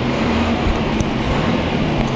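Police vehicle's engine and road noise heard from inside the cabin while driving: a steady low hum under a wash of noise, with one brief click about a second in.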